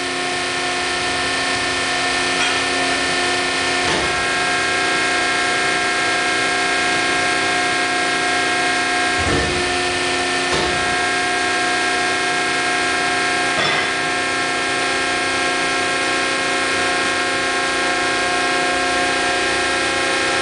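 Hydraulic power unit of a 200-ton down-acting hydraulic press running steadily, a whining hum of several pitches held level throughout. A few faint knocks come through, a pair of them about nine and ten seconds in.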